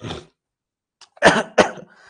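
A man coughing into his fist: a short cough at the start, then two sharp coughs about a second in.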